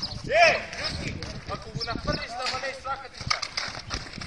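Men's voices calling out and talking during an outdoor pickup football game, with one loud call rising and falling in pitch about half a second in. A few short sharp knocks sound among the voices.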